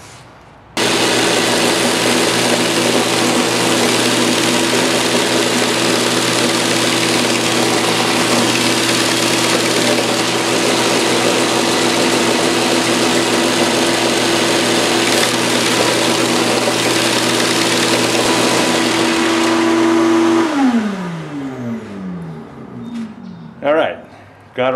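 Benchtop belt sander switched on about a second in and running steadily with an 80-grit belt while the end grain of a softwood box is sanded against it. Near the end it is switched off and the motor winds down, its hum falling in pitch.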